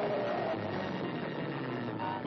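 Dense cartoon soundtrack: a steady rushing roar, the bullet-shaped rocket car's engine effect, mixed with a few held notes of orchestral score.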